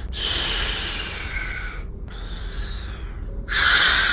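A man's loud, hissing breaths, twice: a long one lasting about a second and a half at the start, and another near the end.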